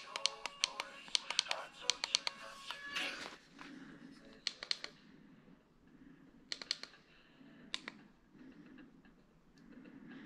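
A quick run of sharp plastic clicks and taps as a pair of over-ear Bluetooth headphones is handled and its controls are pressed, through the first three seconds, then a few scattered taps, over faint music.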